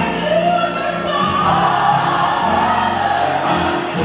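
Gospel music with choir voices singing long, held notes over a steady bass line.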